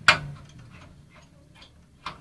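A single sharp click or knock just after the start, followed by a few much fainter clicks.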